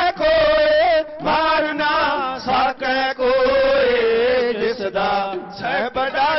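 Dhadi-style singing: male voices chanting in long, wavering, ornamented phrases with a bowed sarangi, broken by short breaths, with one long held note that slowly falls in the middle.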